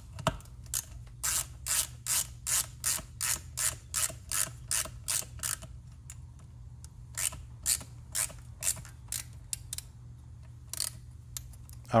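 Hand ratchet driver clicking in two quick, even runs, about three clicks a second, with a pause between, as the mounting screws of a new ignition coil are tightened down with the coil set against a business-card air-gap spacer.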